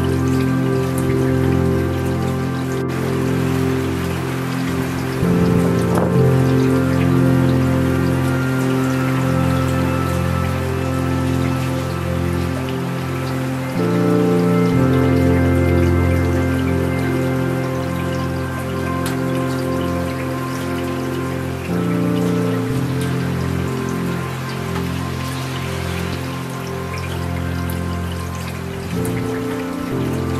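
Slow ambient music of long held chords that change every several seconds, mixed over steady falling rain.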